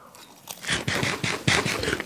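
Close-up chewing of a crisp, breaded Dutch croquette-style snack: a quick run of crunches, about six a second, starting about half a second in.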